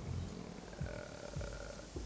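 Low, irregular outdoor background rumble with a faint steady hum through the middle.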